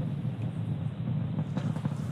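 Low, steady rumble of a SpaceX Falcon 9 rocket's first stage in ascent, its engines throttled down through max Q, the point of maximum aerodynamic stress.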